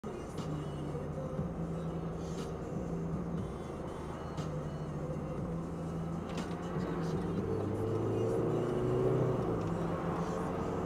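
Car engine and road noise heard inside the cabin of a moving car, a steady hum whose pitch climbs from about seven seconds in as the car speeds up.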